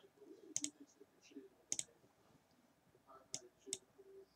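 Four faint, sharp clicks, a second or so apart, some of them doubled, over a faint low murmur.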